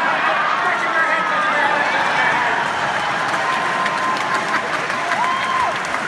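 Theatre audience laughing and applauding, a steady crowd noise with a few voices calling out above it, one near the end.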